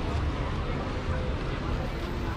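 Wind buffeting the microphone as a steady, uneven rumble, with faint voices of people passing by.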